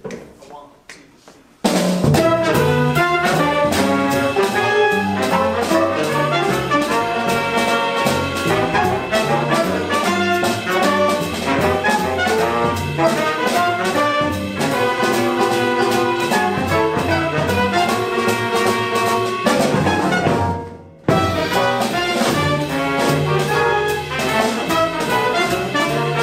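Small jazz ensemble playing live: trombone, trumpet and saxophone over piano, double bass and drums. The band comes in together about two seconds in and stops short for a moment about three quarters of the way through before going on.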